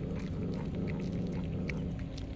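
A cat growling low and steadily while it eats, stopping near the end, over small clicks of cats chewing fish.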